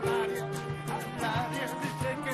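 A band playing an instrumental passage of a pop song: a wavering melody line over sustained chords and steady percussion.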